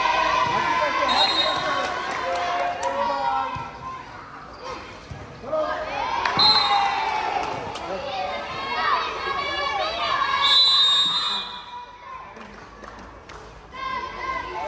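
Children shouting and cheering over one another during a volleyball rally, with a few sharp thuds of the ball being hit.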